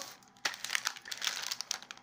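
Plastic product packaging crinkling as it is handled, a dense crackle of small ticks starting about half a second in.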